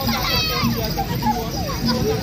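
Children shouting and calling out to one another, over music with a short low note that repeats about every 0.6 seconds.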